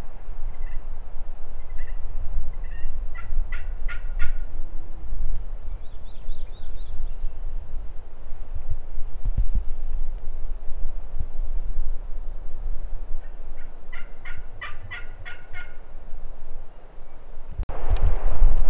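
Merriam's wild turkey gobbling twice, each gobble a quick run of rattling pulses: the first about three seconds in, the second, slightly longer, about fourteen seconds in.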